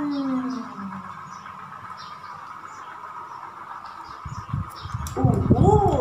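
A woman's drawn-out sung note sliding down in pitch, then a quieter lull with a faint steady hum, then her voice again with a low rumble in the last two seconds.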